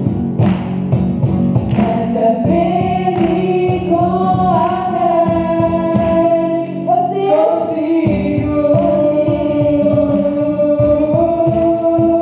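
A small group of young voices sings a song live into microphones, backed by acoustic guitar and a cajón (box drum) keeping a steady beat. The drum drops out briefly about seven seconds in, then comes back.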